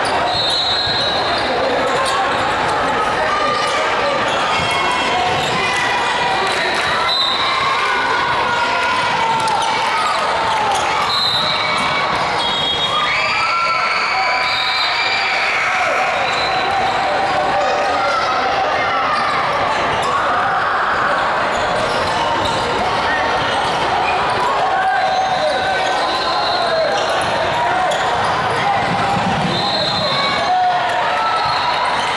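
Busy basketball gym: many voices talking and calling out at once, with basketballs bouncing on the hardwood floor, all echoing in a large hall.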